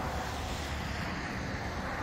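Steady road traffic noise from vehicles passing on the bridge, mixed with wind on the microphone.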